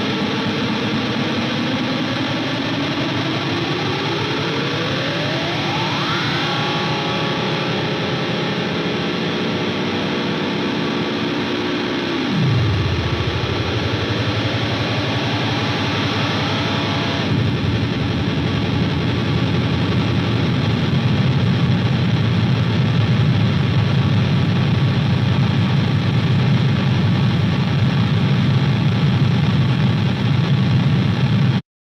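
Closing noise passage of an alternative rock song: distorted electric guitar drone run through effects, with pitches sweeping upward twice and one sharp downward drop about twelve seconds in. From about seventeen seconds it turns into a denser, lower wash that grows slightly louder.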